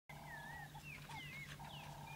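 Faint wild animal calls: high whistles that glide up and down and repeat about once a second, with a lower pulsed call between them, over a steady low hum.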